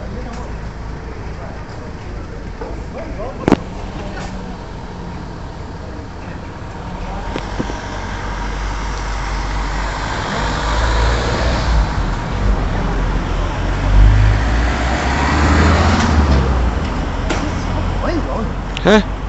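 A motor vehicle passing along the street, its engine rumble and road noise building from about seven seconds in, peaking around fourteen seconds, then easing off. A single sharp knock about three and a half seconds in.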